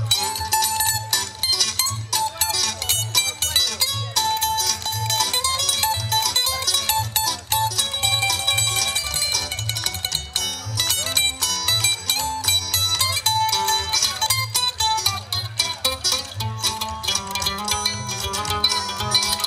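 Live country band playing an instrumental passage: a mandolin picks quick runs over strummed acoustic guitar and an upright bass keeping a steady beat about twice a second.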